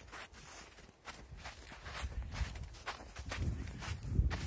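Footsteps crunching on glacier snow, a steady walking rhythm of about three to four steps a second, over a low rumble.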